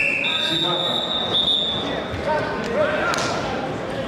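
Ambience of a busy wrestling hall: distant voices and chatter with a few dull thuds. A long, steady high-pitched tone runs from the start for about two and a half seconds.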